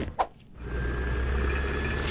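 Helicopter sound effect: a steady rotor-and-engine rumble that sets in about half a second in, with a faint thin whine above it.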